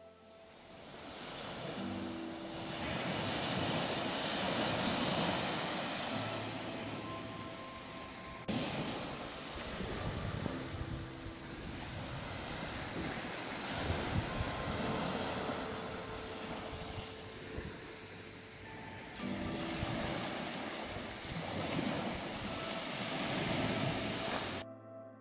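Small waves breaking and washing up a sand beach, the surf noise swelling and fading over several seconds, with an abrupt jump about eight seconds in. Faint background music runs underneath.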